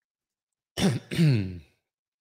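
A man clearing his throat, a two-part "ahem" about a second in.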